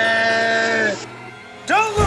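A man's drawn-out yell, held on one note and falling away about a second in, over background music. A new, bending vocal sound starts near the end.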